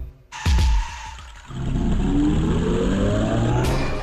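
Cartoon sound effects for a charge and a dust-cloud brawl. Two heavy thuds come right at the start, then from about a second and a half in a long, loud, noisy scuffle with a rising tone running through it, which stops shortly before the end.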